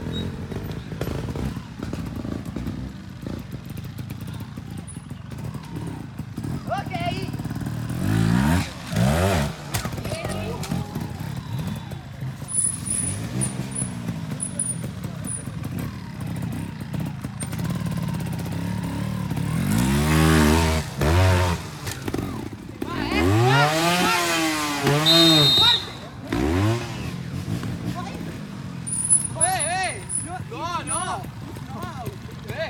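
Single-cylinder trials motorcycle engines running at a low, steady idle, blipped in quick rising-and-falling revs a few times, loudest in a cluster of revs about two-thirds of the way in.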